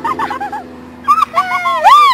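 Excited high-pitched vocal whoops and squeals that sweep up and down in pitch, starting about a second in. The loudest is a long rising-and-falling whoop near the end, as the pie-smeared woman cheers.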